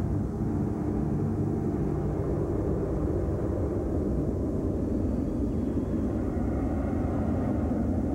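A loud, steady low rumble with no tune, with a few faint held low tones under it in the first few seconds.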